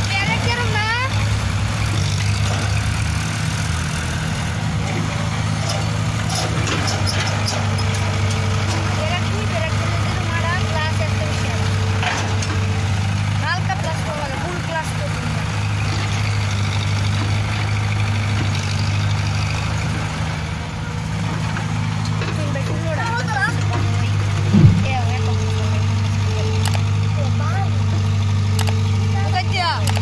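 Diesel engines of a CAT E70 excavator and a farm tractor running steadily while the excavator loads soil. The engine note steps up and down several times as the machine works, with one brief loud bang about three-quarters of the way through.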